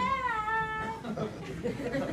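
A high-pitched voice holds one long drawn-out call for about a second, falling slightly in pitch, then gives way to low murmur in the room.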